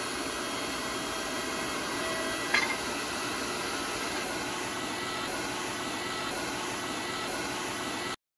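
Electric motor and oil-bath pump of a self-contained hydraulic bender running steadily, with a short metallic clank about two and a half seconds in.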